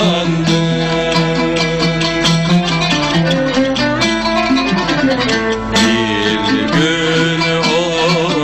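Turkish classical fasıl ensemble playing a piece in makam Nihavend, with violin and oud to the fore over plucked strings.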